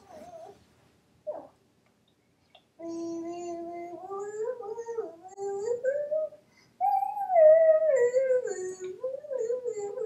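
A young child singing a wordless tune in long held notes that slide up and down, starting about three seconds in. It follows a couple of brief sounds in the first second and a half.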